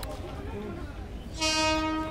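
Train horn sounding one steady blast that starts abruptly about one and a half seconds in and is the loudest sound, over a low murmur of voices.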